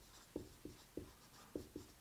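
Dry-erase marker writing on a whiteboard: a string of short, faint squeaks, about three a second, one for each pen stroke of a word.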